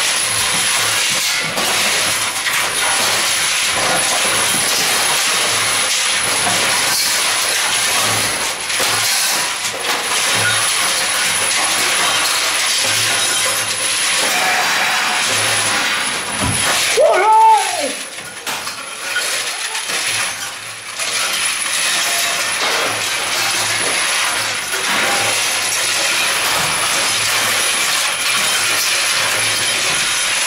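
A loud, steady wall of amplified noise from a live stage performance. Just past the middle, a short tone rises and falls as the noise peaks, then the level dips for a few seconds before the noise returns.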